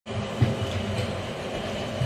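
Footsteps climbing a steel staircase: a few dull thuds, the strongest near the start, over a steady low rumble.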